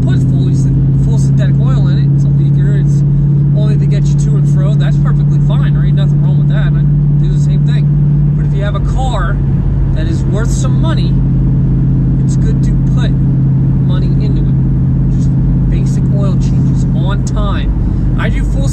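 Steady low drone of a car's engine and road noise inside the cabin while driving, with a man talking over it.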